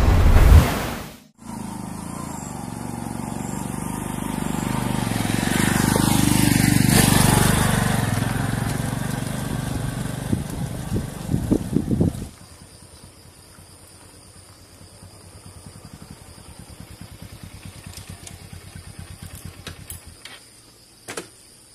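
A short musical sting ends, then a motorcycle rides along a rocky dirt track, its engine growing louder to a peak and fading as it pulls away, with a few sharp knocks from the rough ground. After a cut there is a quieter, evenly pulsing engine idle with insects chirping.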